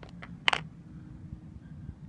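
A single sharp click about half a second in as an iPod is set down on hard ground, with a couple of fainter handling ticks before it, over a faint low hum.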